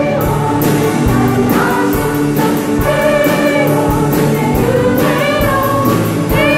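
Women's choir singing a praise song with a live praise band, keyboards carrying sustained chords under the voices and a steady drum beat about twice a second.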